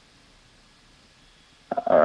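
Near silence with only a faint low hum, then a man's voice begins near the end.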